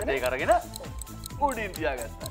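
Voices calling out excitedly over background music, with a fast, even ticking.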